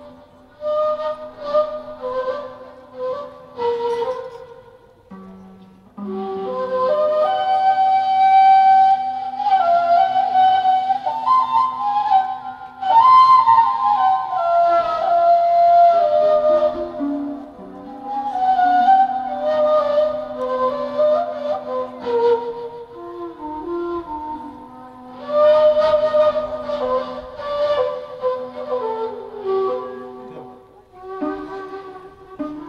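Unaccompanied instrumental melody: a slow, ornamented improvisation in long rising and falling phrases over a held low note, with a short pause between phrases, in the style of a maqam Rast taqsim.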